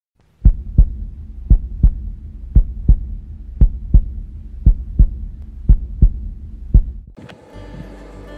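A heartbeat sound effect: a double thump (lub-dub) about once a second, seven times, over a low steady hum. It stops about seven seconds in.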